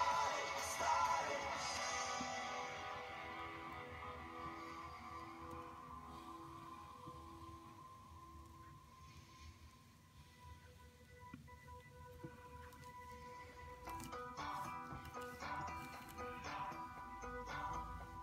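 Soft background music: sustained notes that fade down over the first half, then grow louder again with more notes in the last few seconds.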